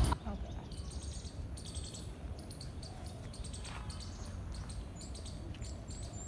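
Outdoor garden ambience of birds chirping in runs of short, high, repeated notes, over a low steady rumble.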